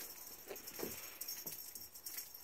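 A cat batting and pouncing at a feather wand toy: a few short soft thumps with a light jangle from the toy.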